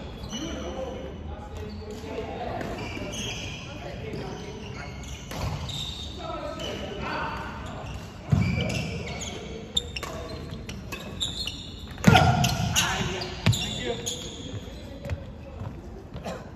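Badminton doubles rally on a wooden sports-hall court: sharp racket hits on the shuttlecock, shoes squeaking and stepping on the floor, all echoing in the large hall, with voices in the background. Two louder sounds stand out about eight and twelve seconds in.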